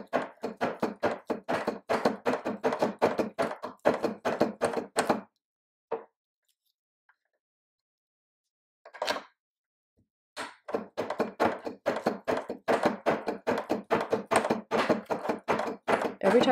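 Cutting block of a Pfeifer single-barrel bassoon reed profiler pushed back and forth over soaked cane on the barrel, shaving it in a fast run of knocking strokes, several a second. The strokes stop for about five seconds in the middle, then start again at the same pace.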